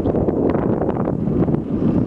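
Wind buffeting the camera's microphone: a loud, rough, continuous rush with frequent crackles.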